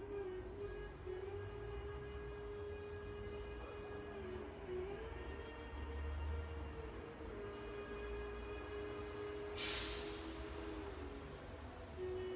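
Soft background meditation music: a sustained drone-like tone with overtones, held for many seconds and shifting slightly in pitch a couple of times, over a low hum. A brief hiss is heard about ten seconds in.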